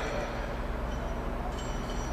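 Steady low background hum of a shop's room tone, with a few faint high-pitched steady tones above it.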